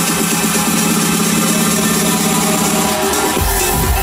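Electronic dance music played loud over a festival sound system, with the bass held out during a build-up until heavy bass comes back in near the end.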